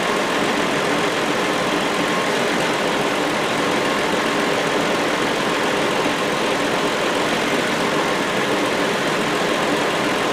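A 2007 Hyundai Sonata's 3.3-litre V6 idling steadily with the A/C switched on, heard under the open hood.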